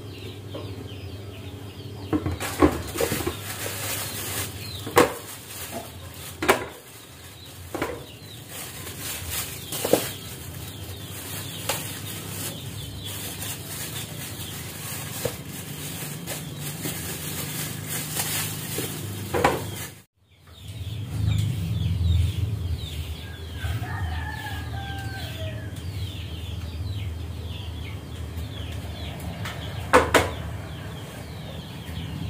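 Kitchen work sounds: sharp knocks and clatter of utensils at irregular intervals over a steady hiss. After a sudden cut, a lower steady hum, with a short bird-like call and faint chirps in the background.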